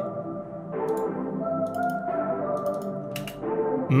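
A slow, dark synth melody of a few closely spaced notes over sustained minor chords, played back from a DAW and washed in long hall reverb from Valhalla VintageVerb.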